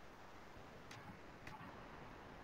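Near silence: faint room hiss with two soft clicks, about a second in and again half a second later.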